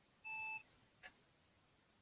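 A single short electronic beep from the computer as it boots into the Debian 10 installer, followed about half a second later by a faint click.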